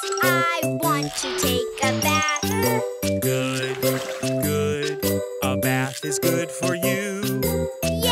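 Children's nursery-rhyme song: voices sing the lyrics over a bouncy, chiming accompaniment with a steady bass line.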